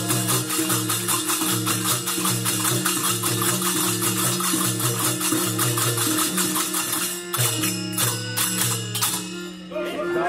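Devotional bhajan music: a harmonium holds sustained chords in a repeating pattern under a fast, steady beat of hand clapping and jingling percussion. The beat thins out and drops away near the end.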